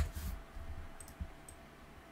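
A few light computer mouse clicks: a sharper one at the very start, then fainter clicks about a second in and half a second after that.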